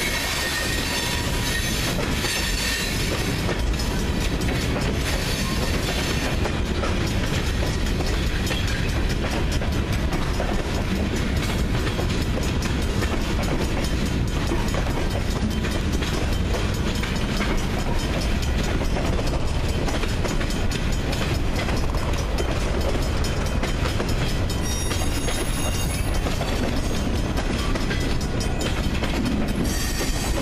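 Freight train cars, covered hoppers and boxcars, rolling past close by: a steady rumble with the clickety-clack of wheels over rail joints.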